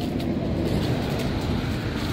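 A car driving past on the street: steady engine and tyre noise.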